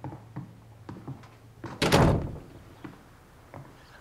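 A wooden room door shutting with a single heavy thunk about two seconds in.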